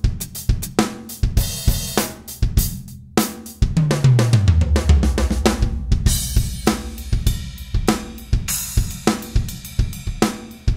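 Korg Krome workstation's Jazz Dry/Ambience Kit drum sounds played live from the keys: a loose run of kick, snare, hi-hat and cymbal hits. About three and a half seconds in, a deep drum hit rings for over a second, falling in pitch.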